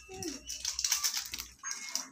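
Food sizzling and crackling in a wok of hot oil over a gas burner, loudest about a second in. A brief whine comes near the start.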